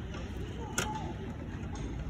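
A single sharp knock of a cricket ball about a second in, over a steady outdoor background, with a few much fainter ticks around it.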